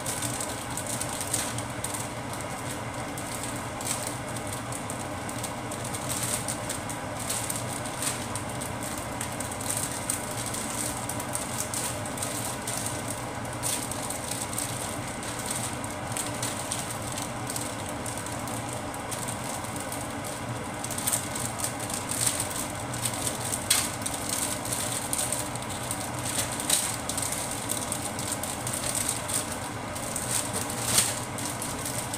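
Steady whooshing of a kitchen range-hood fan, with light irregular crackling from liquid cooking in a wok. The crackles come more often in the last third.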